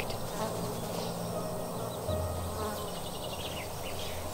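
A low, steady buzzing drone that gets louder about two seconds in.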